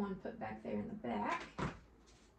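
A woman's voice speaking briefly, words not made out, then a single sharp click about one and a half seconds in.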